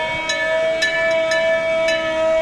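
A fire truck's bumper-mounted bell rung over and over, about two strokes a second, its ringing tone held steady between strokes.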